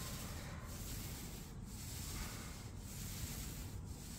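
Paint spray guns on extension poles hissing steadily as the ceiling is sprayed. The hiss dips briefly about once a second.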